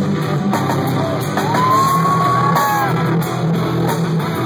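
A power metal band playing live and loud, with distorted guitars and drums heard through the hall. About a third of the way in, a long high note is held and then bends away.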